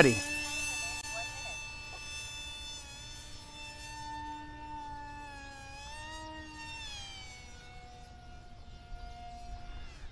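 E-flite AeroScout RC trainer's brushless electric motor and three-blade propeller buzzing in flight: a steady whine that wavers in pitch about two-thirds of the way through, then settles lower for the last few seconds.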